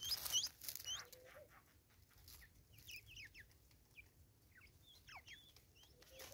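Natal spurfowl pecking seed off a wooden tree stump: a quick run of sharp taps in the first second and a half. Small birds' high chirps sound over the taps, then thin falling chirps from small birds carry on faintly to near the end.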